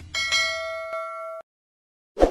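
Bell-chime sound effect for clicking a notification bell icon: a bell struck about three times in quick succession, ringing on with several clear tones, then cut off abruptly about a second and a half in.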